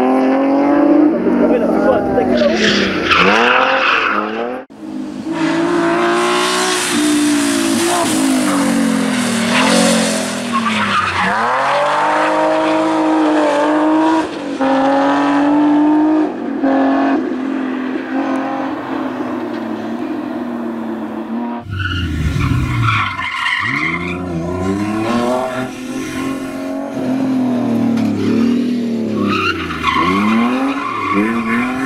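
BMW 320i E30's straight-six engine revving hard and dropping back repeatedly as the car is drifted through hairpins, with tyres skidding and squealing on the tarmac. The sound jumps between separate passes about five seconds in and again about twenty-two seconds in.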